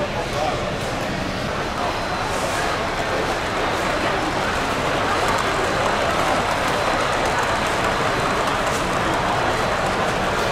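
Indistinct chatter of many people talking at once, heard as a steady, fairly loud background with no single clear voice.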